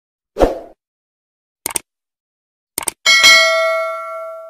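Subscribe-button animation sound effects: a soft pop about half a second in, two quick double mouse clicks, then a bell-like notification ding that rings on and fades slowly.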